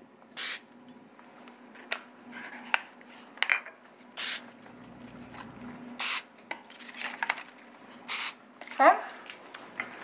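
Cooking oil spray can giving about four short hissing sprays, a second or two apart, as paper baking boxes are greased, with light rustling of the paper between sprays.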